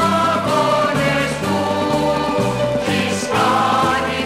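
A group of voices singing a Greek theatre song with orchestral accompaniment, played from a vinyl record; a bass line steps about twice a second beneath it.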